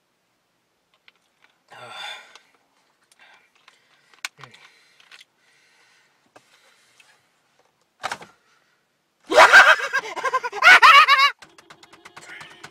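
A man's voice: a short vocal sound about two seconds in, a few small clicks, then from about nine seconds in loud, wordless yelling and shrieking with a wavering pitch.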